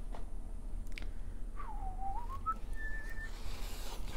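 A person whistling a short phrase: a note that dips, climbs back up, then holds a higher note for about half a second.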